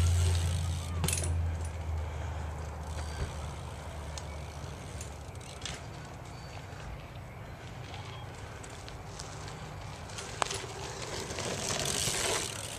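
A BMX bike rolling along a dirt trail, under a low rumble that is strongest in the first few seconds and then fades. A few faint clicks are heard.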